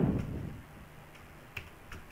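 Clicks of computer keyboard keys as numbers are typed into a data form: a short burst of noise at the start that fades over about half a second, then a sharp single click about one and a half seconds in and a fainter one near the end.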